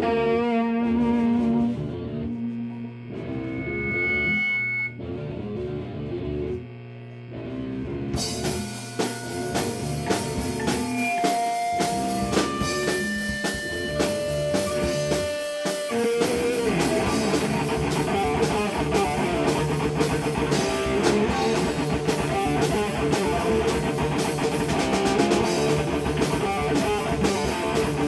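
Live rock band playing electric guitars and drum kit. It opens sparse, grows fuller about eight seconds in, and from about sixteen seconds the whole band plays dense and steady.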